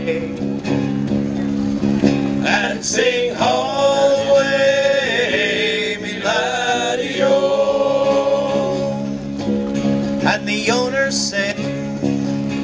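Male voices singing a folk song over guitar accompaniment.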